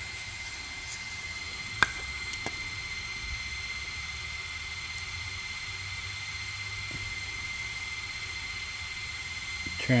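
Steady fan-like hiss with a faint high-pitched whine, from the cooling fan of the switched-on BE100 diode laser engraver idling between jobs. A single sharp click comes about two seconds in.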